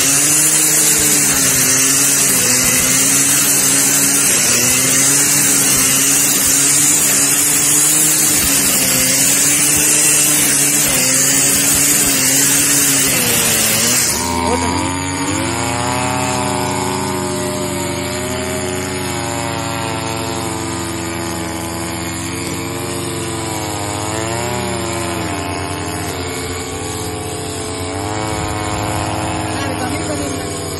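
Stihl brush cutter's two-stroke engine running at high speed with a loud hiss as it cuts grass and weeds. About halfway through, the sound changes abruptly to another brush cutter recording, its engine pitch rising and falling as it is revved.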